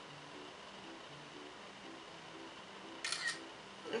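An iPod's camera shutter sound, a short crisp click burst about three seconds in, as a photo is taken. Faint piano background music plays underneath.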